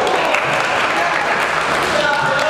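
Onlookers clapping steadily throughout, with voices mixed in.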